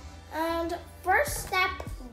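A young child's voice in short, gliding, sung-sounding phrases with no clear words, over background music.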